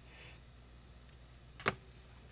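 A single short, sharp click about three-quarters of the way through, over a faint steady low hum.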